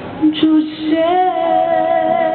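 A woman singing live, accompanying herself on a digital piano; from about a second in she holds one long note with vibrato.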